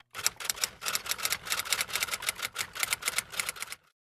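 Typewriter typing sound effect: a quick, uneven run of key clacks, about eight a second, that stops abruptly shortly before the end.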